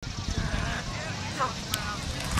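Outdoor ambience on a football field: a steady low rumble of wind on the microphone, with brief distant shouts from players and coaches in the second half.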